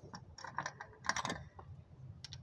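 Light, irregular metallic clicks from a ratchet and spark plug socket being worked while the spark plugs are taken out of a Toyota Kijang's petrol engine.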